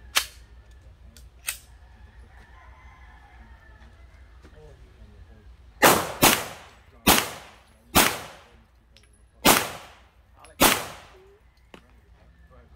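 CZ Scorpion EVO 3 9mm carbine firing six single shots at an uneven pace, each a sharp crack with a short echo, about half a second to a second and a half apart. In the first two seconds there are two earlier shots, one loud and one fainter.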